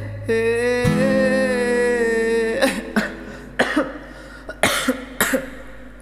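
A man singing a long held note with vibrato over an acoustic guitar, strumming a chord about a second in; the singing breaks off about two and a half seconds in and gives way to several short coughs.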